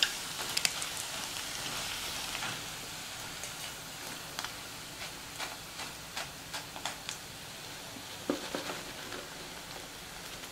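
Battered mushrooms deep-frying in hot oil, a steady sizzle with scattered sharp crackles and clicks; the sizzle eases a little after a couple of seconds.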